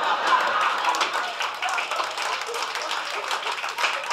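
Audience applauding, a dense patter of many hands that slowly dies down.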